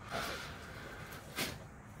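A patient blowing out a long breath during a chiropractic adjustment, then about a second and a half in a single sharp crack as the chiropractor thrusts on the upper back.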